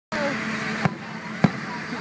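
Two firework bangs about half a second apart, the second louder, over a murmur of crowd voices.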